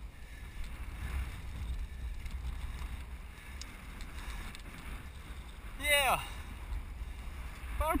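Wind buffeting the microphone at the top of a sailboat's mast, a steady low rumble. A short voice call with a falling pitch comes about six seconds in, and a spoken word starts at the very end.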